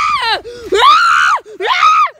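Boys screaming, three high-pitched yells in a row with short breaks between them, each rising and then falling in pitch.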